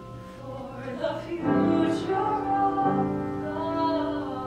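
A woman singing solo over piano accompaniment. Her voice comes in about a second in and swells louder from about a second and a half.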